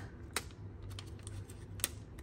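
Two small sharp clicks about a second and a half apart as a toothpick picks glue dots off their roll, over faint handling noise.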